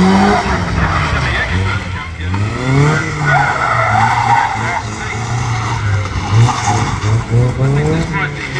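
Competition car on an autotest course, its engine revving up and down repeatedly through tight manoeuvres, with tyres skidding and squealing, the squeal strongest about three to four seconds in.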